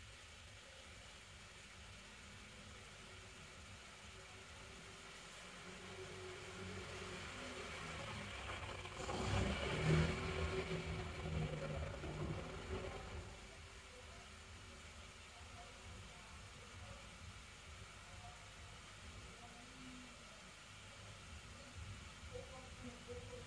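A passing motor vehicle, faint and rising gradually to a peak about ten seconds in, then fading away, over quiet room tone.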